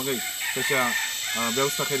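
A rooster crowing once in the background, from about half a second to a second in, with a man's voice around it.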